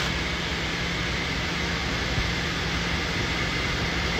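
Steady noise inside a car cabin: a low hum with an even hiss and no sudden events.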